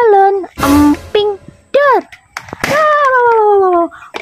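A large latex balloon bursting as a knife blade pierces it: one sharp bang about half a second in.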